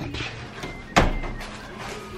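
A single sharp knock about a second in, over faint room noise.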